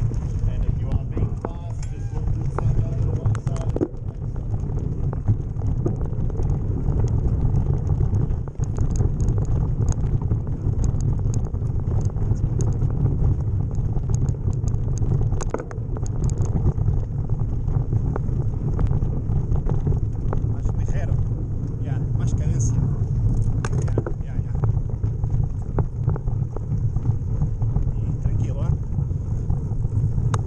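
Wind buffeting the microphone of a camera on a mountain bike moving at speed, a steady low rumble, with the bike's clicks and rattles over a rough gravel and dirt trail.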